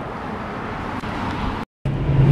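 Steady roadway traffic noise, an even rush without distinct events, broken by a sudden brief dropout to silence near the end.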